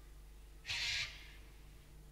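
A single short, harsh bird call lasting under half a second, about two-thirds of a second in, over a faint low hum.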